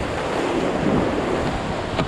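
Steady rushing of whitewater rapids close around an inflatable raft, with wind noise on the microphone.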